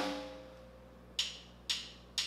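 A drummer's count-in on drumsticks clicked together: two sharp wooden clicks half a second apart, in tempo for the band's entry. Before them, a louder single hit rings out and fades over the first half second.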